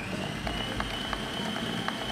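Electric stand mixer running steadily with a high motor whine, its beater churning flour, butter and salt into crumbs for shortcrust pastry dough. The whine steps up a little in pitch about half a second in, and faint ticks come through.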